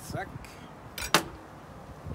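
A sharp knock of a chef's knife against a wooden cutting board about a second in, with a fainter tap before it, as cherry tomatoes are cut.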